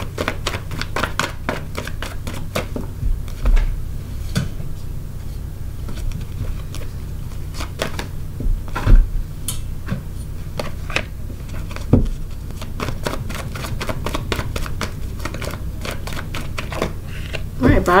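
Tarot cards being shuffled by hand: long runs of quick, light card clicks, with a few louder single taps as cards are put down on the table. A low steady hum runs underneath.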